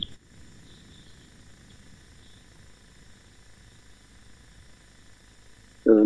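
A faint, steady background hiss with a low hum from the broadcast line: room tone in a lull between speakers.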